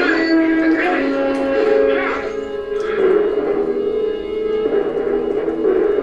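Orchestral film score: sustained chords held steadily, with louder accents at about one, two and three seconds in and again near the end.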